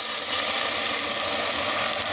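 Chopped tomatoes sizzling in a hot saucepan as they are scraped in from a plate, a loud, steady hiss.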